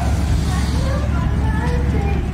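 Faint voices over a loud, steady low rumble.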